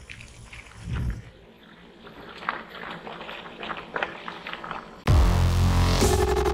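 Mountain-bike tyres rolling over a gravel forest track, with scattered small crunches and clicks. About five seconds in, loud electronic music with a heavy beat starts suddenly.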